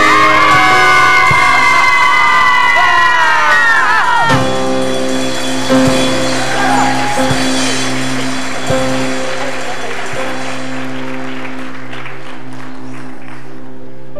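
Cast singing the last held note of the song over the accompaniment, cutting off about four seconds in. A sustained accompaniment chord follows under audience applause and cheering, which gradually fades.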